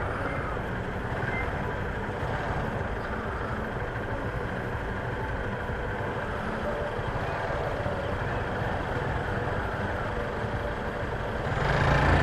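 Small single-cylinder 150 cc motorcycle engine idling while stopped at a traffic light, with steady street traffic noise around it; the engine sound swells near the end as the bike begins to pull away.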